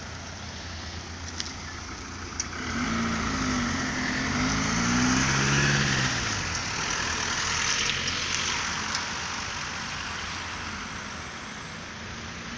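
A car driving past: engine and tyre noise swell from about two and a half seconds in, and the engine note falls in pitch as it goes by, then fades toward the end. A steady low hum runs underneath.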